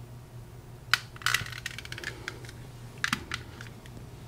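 A few sharp clicks and taps from a long-nosed butane utility lighter being used on a solder-seal connector and then set down: one about a second in, a short cluster just after, and a pair near the three-second mark. A low steady hum runs underneath.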